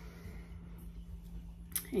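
Faint handling sounds as a black tin candle is picked up off a table, with a brief sharper knock near the end, over a steady low hum.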